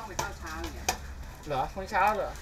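Hand stirring and swishing water in a metal cooking pot, with a sharp metallic clink just under a second in.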